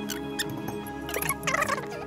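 Metal monitor-mount parts clinking and scraping as they are handled and fitted together, with a burst of rapid clatter about a second in, over soft background music with held notes.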